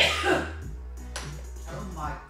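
A man coughs in a short loud burst at the start, with a smaller cough just after, over background music with a steady low bass that then carries on alone.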